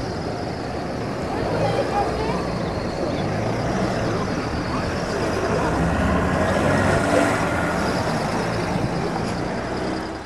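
Road traffic: cars driving past on the road, one passing closer and louder about six to seven seconds in, with indistinct voices of people talking in the background.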